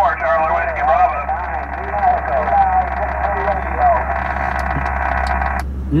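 Single-sideband voice from the Icom IC-7000's speaker on the 20-metre band: distant stations answering a call, their voices thin and narrow over static hiss. The received audio cuts off suddenly shortly before the end.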